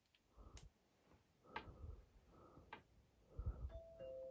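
Faint, scattered soft knocks and sharp clicks, about one a second, over near silence. A steady electronic tone starts near the end.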